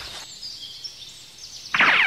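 Faint bird chirps over quiet outdoor background, then near the end a loud sound that falls steeply in pitch for about half a second.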